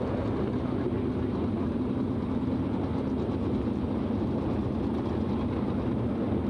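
410 sprint car V8 engines running steadily at low revs, a constant low engine drone with no revving.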